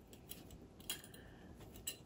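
Faint scattered clicks and ticks from a small metal hurricane lantern being handled as thin fairy-light wire is fed into its glass globe; the loudest tick comes about a second in.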